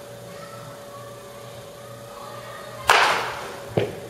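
A wooden bat cracks against a baseball about three seconds in, the loudest sound here, followed just under a second later by a second, shorter knock.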